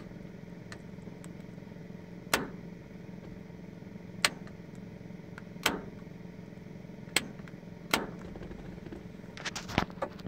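Dual fuel tank selector on a 1977 Chevrolet C20 being toggled back and forth between the right and left tanks, making about seven sharp clicks one to two seconds apart, with a quick cluster near the end. A steady low hum runs underneath.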